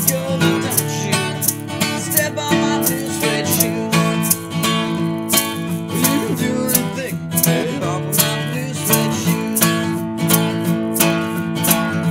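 Acoustic guitar strummed in an even, driving rockabilly rhythm: an instrumental break with no singing.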